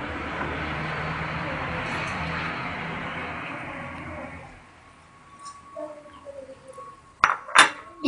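Chopped parsley being scraped off a plate into a metal mixing bowl: a steady rustling scrape for about four seconds that then fades. Near the end come two sharp clinks of dishes.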